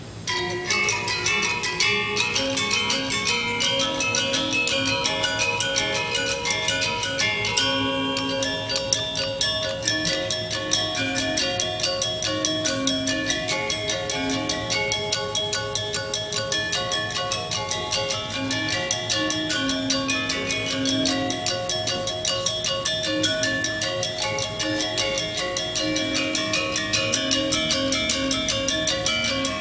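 A Balinese gamelan of bronze-keyed metallophones with bamboo resonators, played with mallets, begins suddenly about half a second in and continues as a dense stream of rapid ringing strokes over lower sustained notes.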